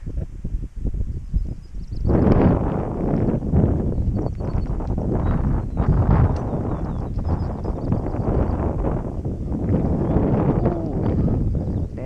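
Wind buffeting the camera's microphone on an exposed grassy hilltop, a rough, gusting rush that gets much louder about two seconds in.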